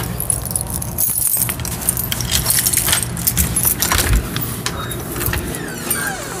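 Close-up handling noise: rustling with rapid light clicking and jingling as the phone is jostled against clothing and carried along.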